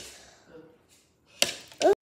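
Two sharp knocks, one at the start and one about a second and a half in, from a fork tapping against a plate while a slice of cake is cut. A brief bit of voice comes just before the end.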